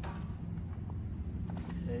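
A disc golf cart being handled and turned: a sharp click at the start and a few faint clicks later on, over a steady low hum.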